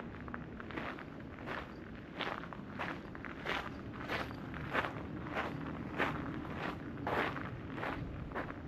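Footsteps crunching on gravel at a steady walking pace, about three steps every two seconds.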